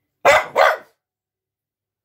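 French bulldog barking twice in quick succession.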